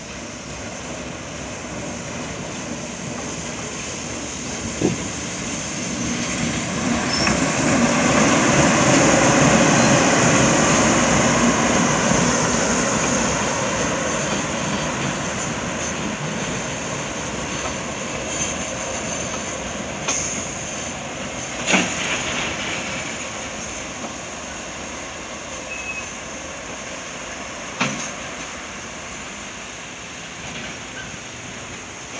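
A JR Freight EF210 electric locomotive and its container wagons passing: a steady rumble of wheels on rail that swells to its loudest about ten seconds in and then slowly fades, with a few sharp clacks along the way.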